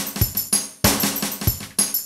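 Electronic drum pattern from a Zoom MRT-3 drum machine, triggered step by step over MIDI by a Groovesizer sequencer: a quick, repeating run of drum hits with a brief gap in the run.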